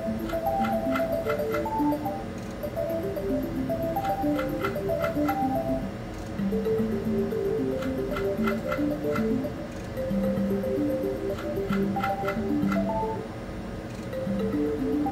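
Mystical Unicorn video slot machine in play at a $2 bet, cycling through spins about every four seconds. Each spin carries a melody of short chiming notes. Quick clusters of ticks come as the reels stop.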